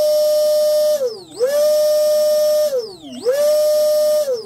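Brushless RC boat motor running on a 90 A ESC, turning its flex drive cable out of the water: a steady high whine that twice drops away and climbs straight back up as the throttle is eased off and reapplied. It sounds good, running smoothly.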